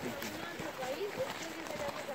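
Faint, indistinct voices of people talking a little way off, with footsteps on a dry dirt trail.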